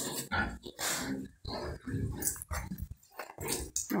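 Pigs grunting in a quick series of short, rough grunts, about two or three a second.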